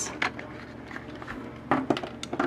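Clear plastic blister pack of a Hot Wheels card handled as the die-cast car is taken out: a few light plastic clicks and crinkles, with a short cluster of them near the end.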